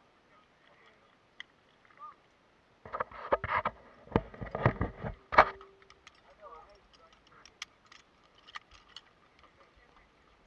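A burst of clattering knocks from the zip-line trolley and its clips being handled, starting about three seconds in and lasting a couple of seconds, then only faint scattered sounds.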